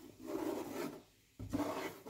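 A silicone spatula scraping cooked milk across the titanium non-stick coating of a Tefal Unlimited frying pan, in two strokes with a short pause between. The milk comes away from the coating and leaves a clean surface.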